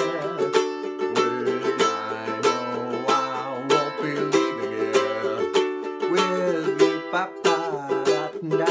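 Ukulele strummed in a steady rhythm, playing C major chords and changing to E minor near the end.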